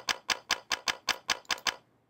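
Evenly spaced sharp clicks, about six a second, stopping shortly before the end: the audio of an electrode-recorded neuron's spikes, an MT cell firing to motion in its preferred direction, down and to the right.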